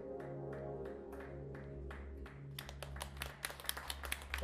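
A live band's closing chord held on keyboard and bass, with light regular taps about twice a second. Audience applause breaks in about two and a half seconds in.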